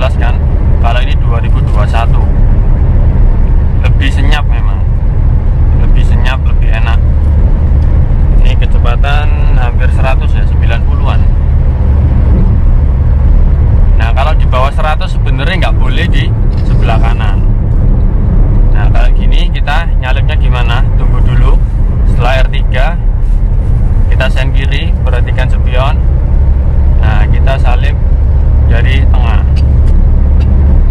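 Steady low drone of engine and road noise inside the cabin of a 2014 Suzuki Karimun Wagon R with its small three-cylinder petrol engine, cruising at highway speed. A voice talks on and off over it.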